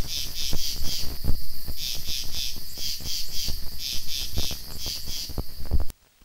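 Rhythmic high chirping in quick clusters, like crickets at night, over a low hum, with scattered clicks and pops. It all cuts off suddenly near the end.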